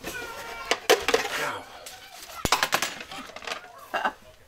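Aluminium flexible ducting and heater vent parts being handled and fitted: crinkling, knocks and clicks, with one sharp click midway. A short pitched vocal sound comes at the very start.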